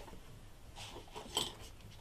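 Faint rustling of cardstock being moved by hand on a paper-covered desk, with a soft tap about one and a half seconds in.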